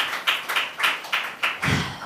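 Hands clapping in distinct, evenly spaced claps, about three or four a second, that stop about a second and a half in. A short low thud follows near the end.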